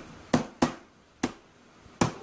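Three sharp taps from hands working with papers and a calendar on a tabletop: two close together about a third of a second in, then one more at about a second and a quarter.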